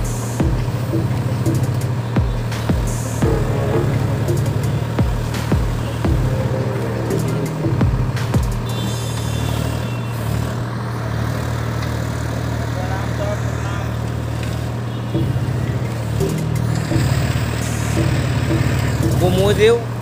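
Swaraj tractor's diesel engine running steadily while it drives the hydraulic backhoe digging and lifting soil. Background music with low drum beats plays over it for roughly the first nine seconds.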